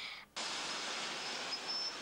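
A brief spoken 'Oh', then about a third of a second in a steady rushing hiss of surf on a beach cuts in abruptly, with a faint high steady whine over it.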